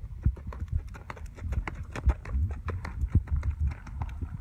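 Horse's hooves striking the dirt arena footing in a quick, uneven run of hoofbeats as it moves under saddle, over a low rumble.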